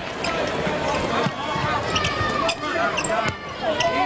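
A basketball bouncing on a hardwood court during live play, with arena crowd noise underneath.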